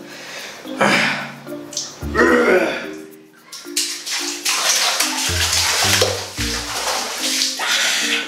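Background music with a bass line, over two short strained vocal sounds from a man in the first few seconds, then water splashing in a plastic basin as bare feet stamp and lift out of it.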